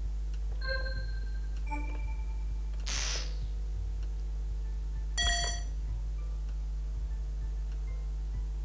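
Game-show electronic sound effects: two short beeps of different pitch early on as the colour buttons on the contestant's console are pressed, a short swoosh about three seconds in, and a bright electronic chime a little after five seconds, over a steady low hum.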